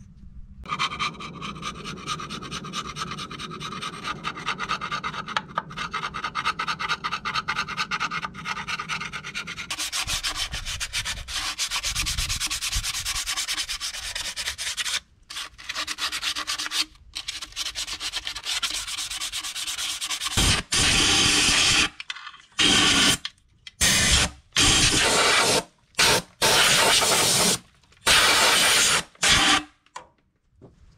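Scraping and rubbing with a hand tool on the cast-iron water pump mounting face of an International Harvester 533's three-cylinder engine, cleaning the surface for the new pump. In the last third it turns into about eight loud, separate bursts of rasping noise, each about a second long.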